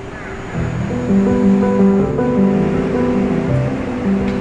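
Background music: an instrumental track of sustained, stepping notes that swells louder about a second in.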